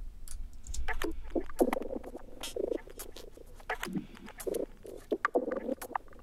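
Playback of a minimal tech house breakdown: sparse, clicky percussion and short mid-range synth blips, with the low end filtered out. A subtle pitch-shifting echo from a crystallizer effect trails the hits.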